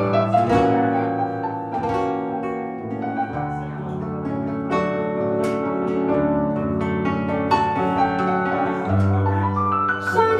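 Digital stage keyboard with a piano sound playing a slow instrumental passage, a melody over held chords. The bass note changes about three and a half seconds in and again near the end.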